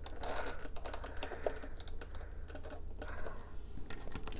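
A deck of oracle cards being shuffled by hand: a quick run of light, irregular clicks and card rustles.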